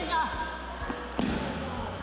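Judoka being thrown and landing on tatami mats: two sharp slapping thuds of breakfalls, one at the start and one a little over a second in, with voices around them.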